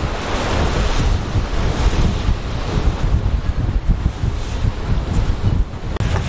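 Wind buffeting the microphone in irregular gusts over a steady rush of choppy water, heard from the deck of a moving boat.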